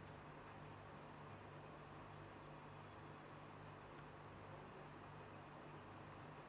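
Near silence: a faint steady hiss with a low hum.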